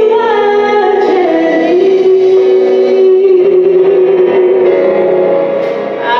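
A woman singing a gospel song into a handheld microphone, holding one long note through the middle of the phrase, with a short break near the end before the next phrase starts.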